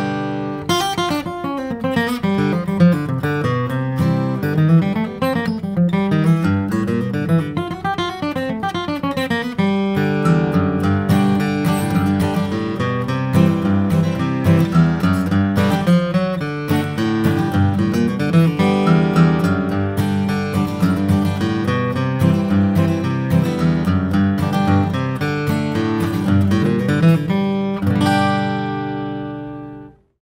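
Martin D-41 dreadnought acoustic guitar, solid Sitka spruce top with East Indian rosewood back and sides, flatpicked with a pick: a continuous run of single-note lines and chords, ending on a chord left to ring out and fade near the end. Unamplified, on factory strings, with no EQ or compression.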